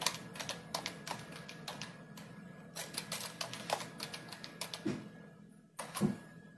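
Keyboard typing: irregular runs of light key clicks, a short pause, then a couple of louder taps near the end.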